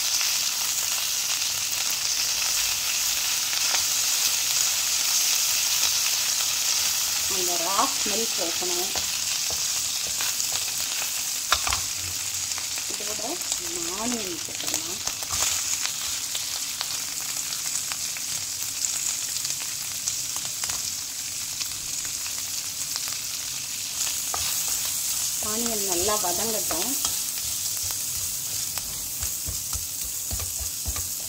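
Butter sizzling steadily in a nonstick pan as a spatula stirs, with sliced onions frying in it later on. A single sharp click sounds a little before the midpoint.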